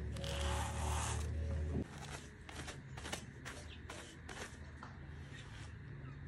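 Raw sheep's wool being carded between a pair of wooden hand cards, the wire-toothed boards brushed past each other in repeated scraping strokes, about two or three a second. A steady low hum runs under the first two seconds and cuts off suddenly.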